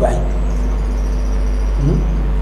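A steady low electrical hum with faint even background noise during a pause in a man's speech, which resumes with a short voiced sound near the end.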